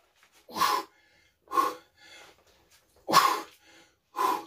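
A man's hard, forceful breaths of effort during a set of incline dumbbell flies: three loud, sharp exhalations about a second or more apart, with fainter breaths between, one with each repetition.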